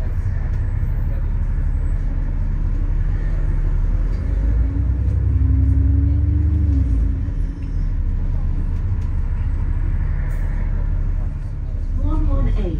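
Inside a moving double-decker bus: a steady low engine and road rumble, with a whine that rises and falls a little around the middle as the bus pulls harder.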